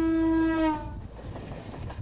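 Horn of a Mumbai suburban electric train blowing one loud, steady note that sags in pitch as it cuts off under a second in, followed by the rumble and clatter of the train's wheels on the track as it passes.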